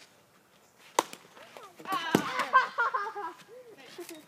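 A single sharp crack of a plastic wiffle ball bat hitting the ball about a second in, followed a second later by a duller knock and kids shouting.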